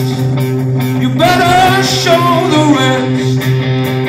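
Live stoner rock band playing loud through a PA: distorted electric guitars, bass and drums, with a melody line that bends up and down in pitch over the sustained chords.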